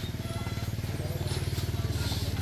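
A small engine idling steadily: a low hum with a fast, even pulse that does not change.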